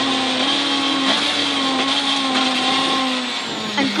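Ford Fiesta rear-wheel-drive rally car's engine heard from inside the cabin, held at steady high revs in sixth gear. Near the end the revs fall away as the car slows for a chicane.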